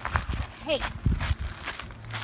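Footsteps of a woman and a Vizsla walking together on a leash, a few irregular steps, with a sharp spoken "Hey" to correct the dog a little under a second in.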